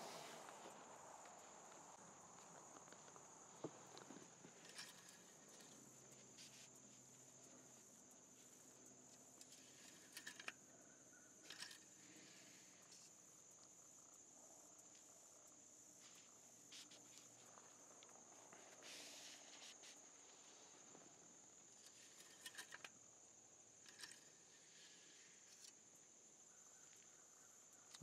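Near silence with a faint steady high-pitched tone and a few soft clicks as the oil dipstick is handled.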